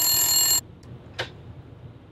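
Telephone ringing, made of many steady tones, cutting off suddenly about half a second in. A short click follows about a second in.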